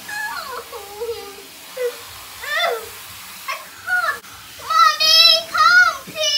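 A young girl crying and whimpering in short bursts, then two louder, drawn-out wails near the end, in a small tiled bathroom.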